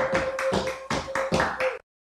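A quick, regular run of sharp taps, about five a second, over a steady held tone, cutting off suddenly shortly before the end.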